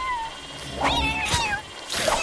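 Kitten meowing twice: a short meow right at the start, then a longer, wavering meow about a second in.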